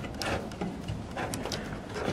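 A few faint clicks and light knocks from handling the steel shed door's top rail and fittings.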